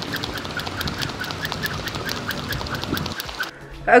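Jump rope skipping on a concrete path: quick, evenly spaced slaps of the rope and sneakers landing, stopping suddenly about three seconds in.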